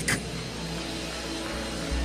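Soft background keyboard music holding a steady low chord, with no speech over it.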